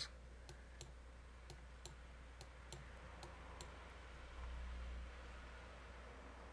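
Faint computer mouse clicks, about ten scattered single clicks, over a low steady electrical hum. A brief low rumble comes about four and a half seconds in.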